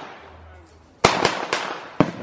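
Firecrackers going off: three sharp bangs in quick succession about halfway in, each trailing off briefly.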